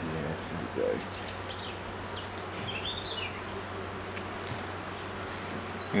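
A honeybee colony buzzing steadily as a hive stands open and its frames are lifted out, with a few faint bird chirps partway through.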